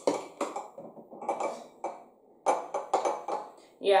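Ice cubes clinking in a glass and dropping into a ceramic coffee mug. There are a few sharp clinks at the start, then a quick run of clinks a little past the middle.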